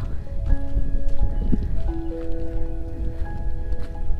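Background music of slow, held notes that change every second or so, over a steady low rumble.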